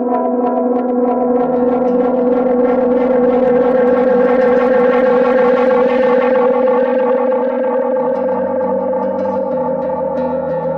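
Electric guitar played through a NUX NDD-7 Tape Echo pedal: long sustained notes thick with echo repeats. The wash swells brighter and louder toward the middle, then eases, and a new low note comes in near the end.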